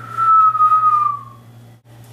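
A person whistling one long note that slides down slightly in pitch and stops after about a second and a half.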